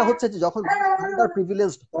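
Speech only: a man talking over a video call, his voice pitched and drawn out in places.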